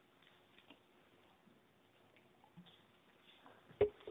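Quiet room tone with faint scattered ticks, then one sharp thump a little before the end.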